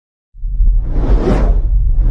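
A loud whoosh over a deep rumble, starting suddenly about a third of a second in, swelling to a peak and fading again.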